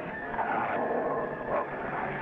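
A German Shepherd dog snarling amid the scuffling noise of a fight.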